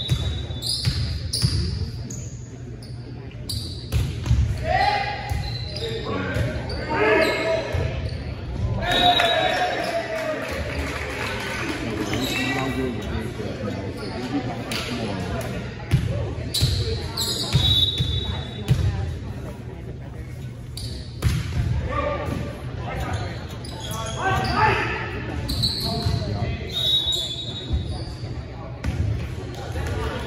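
Volleyball being played in a gymnasium: repeated sharp thwacks of the ball being served, bumped and spiked, with players shouting calls, all echoing in the large hall.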